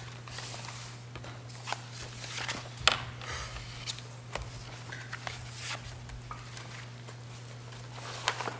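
Papers being shuffled and handled on a meeting table, with scattered soft clicks and taps and one sharper tap just before three seconds in, over a steady low hum.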